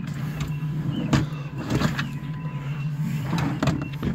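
A nightstand drawer being pulled open, sliding out with a few knocks and scrapes, over a steady low hum.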